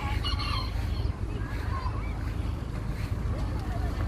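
Steady low rumble of wind buffeting the microphone, with faint voices of people around.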